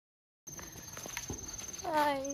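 Crickets trilling, a steady high-pitched buzz that starts abruptly about half a second in after silence, with a few faint knocks. A voice begins near the end.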